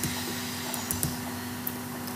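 Steady background hiss with a constant low electrical hum, the room and microphone noise of a home recording, with a few faint ticks about a second in.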